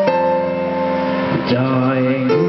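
Electronic keyboard music played through a PA system: held chords that change to a new chord about one and a half seconds in.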